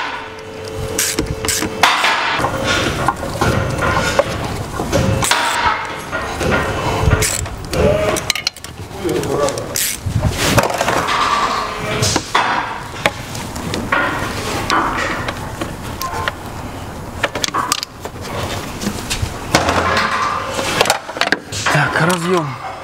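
Hand tool clicking and knocking against metal hose clamps and a rubber intake hose in an engine bay as the clamps are tightened, with indistinct talk and music in the background.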